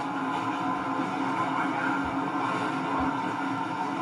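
Steady running noise of a tram, a constant low hum under an even rumble, played back from a video and re-recorded off a screen. A few soft low bumps come near the end.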